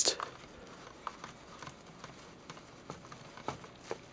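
Scattered light plastic clicks and taps, about seven in four seconds, from a spin mop's head being twisted and seated onto the end of the mop pole.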